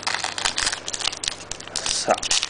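A foil trading-card pack wrapper being torn open by hand, with a rapid, irregular run of crinkling and crackling.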